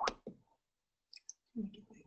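A few scattered sharp clicks from computer keys picked up by the microphone, with a brief low muffled sound shortly before the end.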